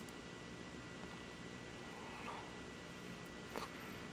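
Quiet room tone: a faint even hiss with a thin steady high-pitched whine, and one faint tick near the end.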